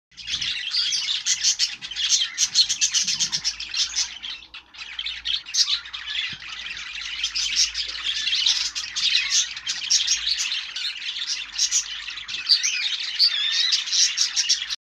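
Budgerigar chattering and warbling continuously, a dense run of quick clicks and chirps, with a short lull about four and a half seconds in.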